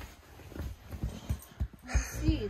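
Dog making a string of short, low, quiet whimpering sounds, worked up at a deer outside the window.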